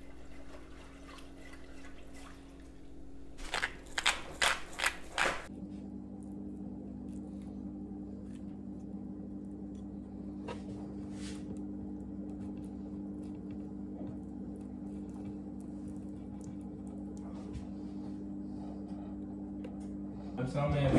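A wire whisk stirring rice and water in a pot, with a quick run of loud sloshing strokes about four seconds in. After that a steady low hum, with a few faint taps of a knife cutting raw chicken on a wooden board.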